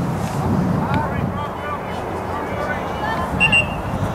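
Distant, scattered voices of players and spectators calling across an outdoor soccer field, over a steady low background rumble. About three and a half seconds in, a brief high tone sounds.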